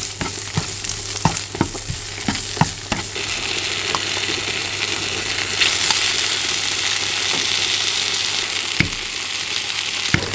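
Diced luncheon meat and garlic sizzling in a nonstick frying pan, with a spatula knocking and scraping against the pan several times in the first three seconds. After that the sizzle turns louder and steady once kimchi is frying in the pan.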